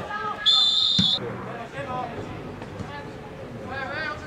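A referee's whistle gives one short, steady blast of about three-quarters of a second, stopping play. A dull thump comes just as the blast ends.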